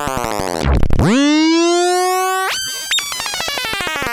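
Eurorack modular synthesizer patched from Mutable Instruments Stages, Mutable Instruments Tides and a Nonlinear Circuits Neuron, playing harsh experimental noise. A tone swoops down into a low thud just before a second in, then glides up and holds a buzzy pitch. At about two and a half seconds it switches abruptly to a dense, clangorous metallic tone, with a click near the three-second mark.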